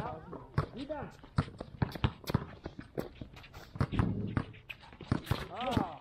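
Basketballs bouncing on a court floor: irregular, overlapping thuds from more than one ball, with voices between.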